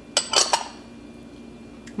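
Small glass prep bowl clinking against glass, three quick clinks in the first half second, as it is emptied of sugar into a large glass mixing bowl and handled.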